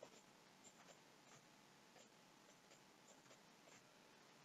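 Near silence: faint room tone with a few faint, scattered clicks, about two a second.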